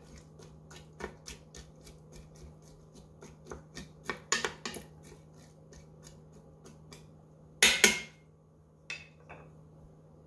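Wooden spatula stirring vegetables in the stainless steel inner pot of an Instant Pot, with a string of light clicks and scrapes against the pot. A louder knock comes about three-quarters of the way through, then a single click near the end.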